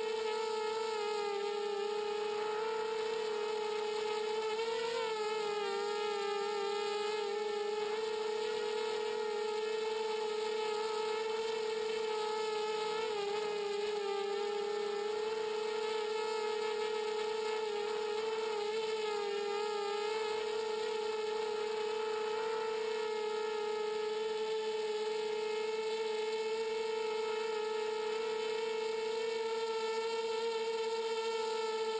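A ZMR250 FPV miniquad's four brushless motors and propellers whining steadily in flight: a high buzzing tone that wavers and dips briefly with throttle changes about five and thirteen seconds in.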